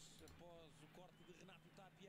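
Near silence with a faint voice talking, the broadcast commentary of the football highlights playing at low volume, over a steady faint low hum.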